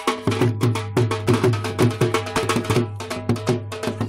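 Punjabi dhol drum played in a fast, driving bhangra rhythm, several strokes a second: sharp high cracks over a deep, ringing bass.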